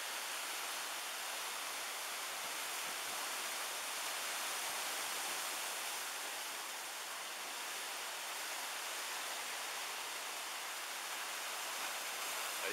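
Surf breaking and churning over the rocks of a small rocky cove below, a steady rushing noise with only slight swells.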